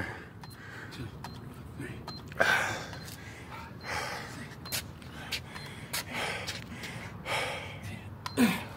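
A man breathing hard in forceful breaths, about one every one and a half to two seconds, in time with his push-ups.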